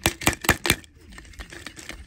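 Hard clear plastic eggs clicking and knocking together in the hands: four sharp clicks in the first second, then a run of lighter, quicker clicks.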